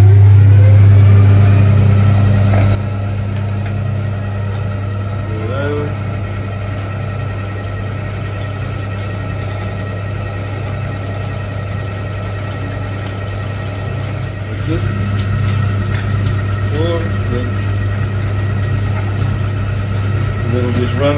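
Centrifugal pewter casting machine spinning, a steady low electric hum. It is loudest for the first few seconds as it gets up to speed, then settles to an even drone that swells slightly about fifteen seconds in.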